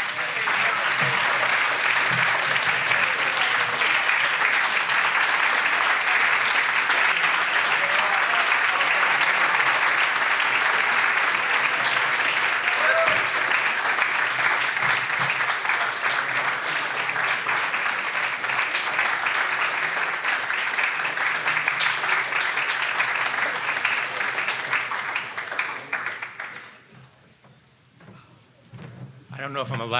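An audience applauding steadily for a long stretch after an award is announced, dying away about two seconds before the end.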